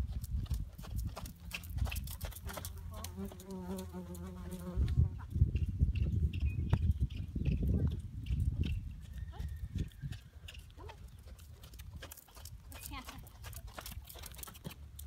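Horse cantering in a sand arena, its hoofbeats coming as a run of short knocks, with wind rumbling on the microphone. A drawn-out pitched call comes about three seconds in and lasts over a second.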